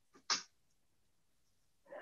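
Near silence: faint room tone of a video-call recording. One brief, faint breathy sound comes about a third of a second in.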